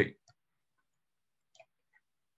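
A man's voice trailing off at the very start, then near silence in a pause between phrases, broken only by a couple of faint clicks.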